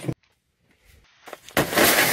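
A vehicle's tempered-glass side window shattering, struck by a shard of spark-plug ceramic. A sudden loud crash comes about one and a half seconds in, then a fading rush of glass breaking up and falling.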